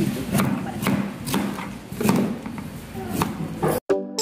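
Knife chopping fruit peels on a plastic cutting board: irregular sharp chops, about two a second.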